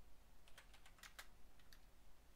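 Faint typing on a computer keyboard, a quick run of about ten keystrokes clicking.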